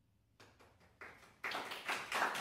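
Audience applause beginning at the end of a piece: a few scattered claps about half a second in, swelling into full, louder applause near the end.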